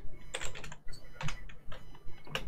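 Computer keyboard being typed on: a quick, uneven run of key clicks, several in two seconds.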